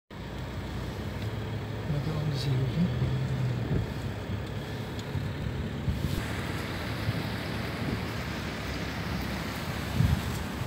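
Inside a car driving on a wet road in the rain: steady engine and tyre noise. About six seconds in, a brighter hiss sets in.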